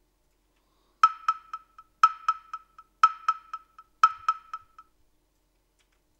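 Electronic chime: four bright pitched pings one second apart, each trailed by a few quick repeats that fade like an echo, all within about four seconds.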